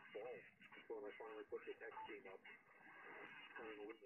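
Faint single-sideband voice received on a Yaesu FTDX10 transceiver and played through its built-in speaker, the audio cut off above about 3 kHz. A short single beep comes about halfway through.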